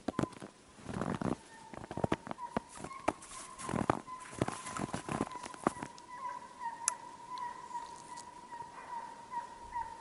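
Distant Russian hounds baying on a hare's trail, a faint wavering cry that carries on throughout and swells in the second half. Over it for the first six seconds come close rustles and knocks of clothing and a shotgun being handled.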